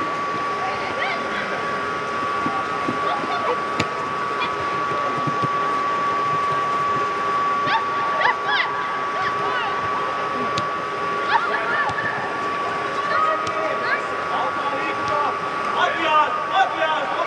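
Scattered shouts of young football players in a large reverberant indoor hall over a steady high hum, with a few sharp knocks.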